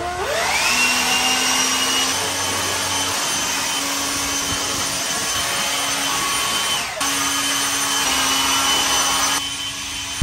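Cordless brushless leaf blower spinning up to speed in the first second, then running steadily with a high whine over the rush of air. Its level dips briefly about seven seconds in.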